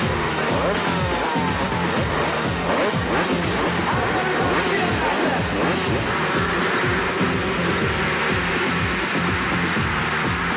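A pack of two-stroke motocross bikes revving hard and accelerating away together from the start, many engine notes rising and falling over one another, mixed with music.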